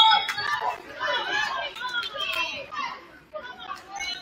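Players and spectators in a gymnasium, many voices calling and chattering at once. The tail of a referee's whistle, a steady high tone, fades out in the first moment, with play stopped.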